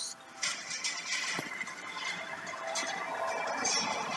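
Film trailer audio played back through a device speaker: a dense, noisy mix of sound effects with faint music underneath.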